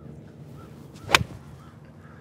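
A seven iron swung through and striking a golf ball off turf: a brief swish of the club, then one sharp, crisp click about a second in. The strike is solid, a ball caught cleanly.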